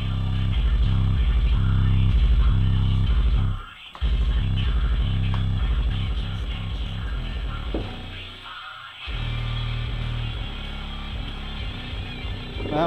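Bass-heavy guitar music played through a pair of Hippo XL64 subwoofers, their cones pumping with deep, pulsing bass that briefly drops out about four seconds in and again near nine seconds. The subwoofers are being broken in, loosening up and making a little less noise the more they are played.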